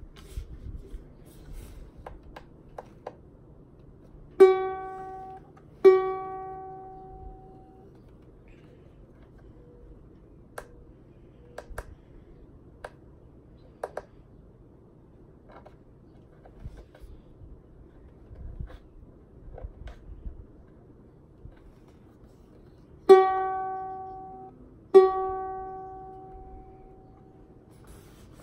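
Mitchell MU50SE concert ukulele being tuned: single strings plucked and left to ring out, a pair of notes a few seconds in and another pair near the end. Faint clicks and taps in between.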